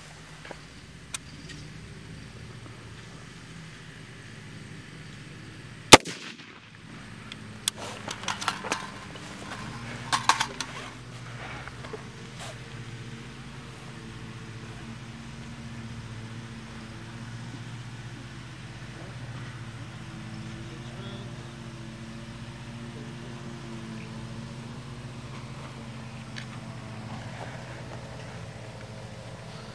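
A single 5.56 mm rifle shot from an AR-15-type carbine firing an M855 (SS109) green-tip round, about six seconds in and by far the loudest sound. A few lighter knocks and clatters follow over the next few seconds, then a faint steady low drone.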